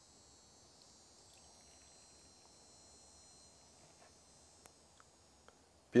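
Faint, steady, high-pitched insect buzz, with a few tiny clicks near the end.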